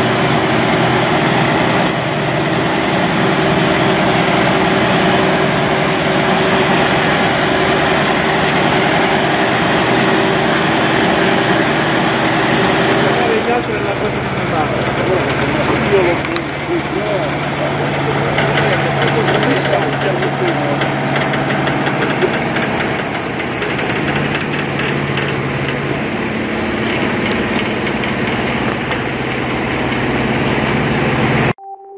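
Diesel engine of a heavy-haul Iveco tractor unit running steadily as the truck moves at walking pace with its oversize load. There is an abrupt cut about halfway through to a steadier engine hum with people's voices over it.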